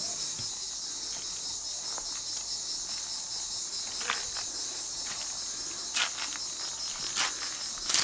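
A chorus of cicadas keeps up a steady high-pitched buzz, with a few short knocks in the second half.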